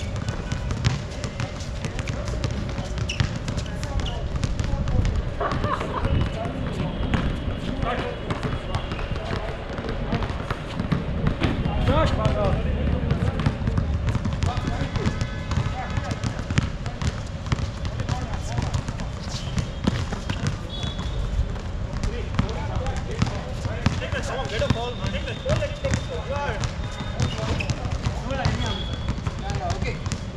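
Outdoor basketball game: a basketball bouncing on the court at irregular moments, with players' voices calling out, over a steady faint hum.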